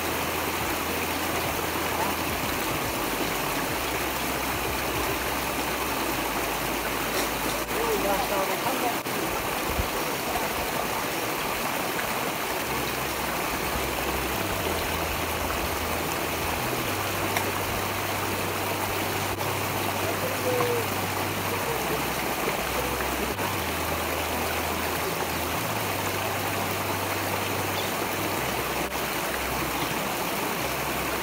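Shallow rocky stream running, a steady rush of flowing water that doesn't change.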